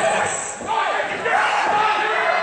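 Several spectators shouting and yelling at once, their voices overlapping in a large, echoing hall.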